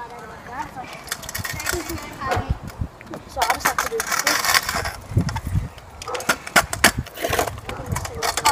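Stunt scooter rolling and sliding on a rough concrete driveway: the small hard wheels rumble over the surface, with many sharp clacks and knocks from the wheels and deck hitting cracks and bumps.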